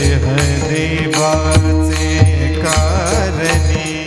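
Marathi devotional kirtan singing: a man's voice sings a wavering, ornamented melody through a microphone, over taal, small brass hand cymbals clashed together in a steady beat by a chorus of men, with a low drum pulsing along and a steady held tone underneath.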